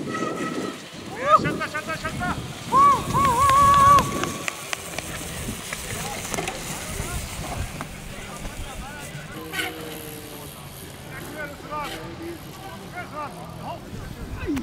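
People whooping and yelling wordlessly, with a short rising whoop a little over a second in and a long, high, wavering yell from about three to four seconds; fainter whoops follow later.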